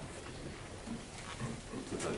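Low, murmured voice, with a short mumbled phrase about a second and a half in, over steady room hum.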